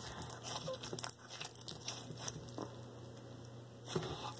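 Pink slime squeezed and stretched between bare hands, giving faint, irregular little crackles and pops.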